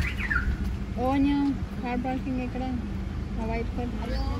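People's voices talking and calling at a distance in short phrases, with a bird giving a couple of quick falling chirps at the very start, over a steady low rumble.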